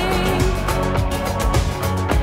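Pop song: a sung note is held and ends about half a second in, then the backing track carries on with a steady beat.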